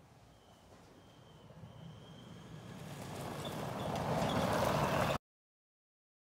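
Polaris Ranger EV electric utility vehicle driving toward the camera: a rushing running noise that grows steadily louder over about three seconds, then cuts off suddenly about five seconds in.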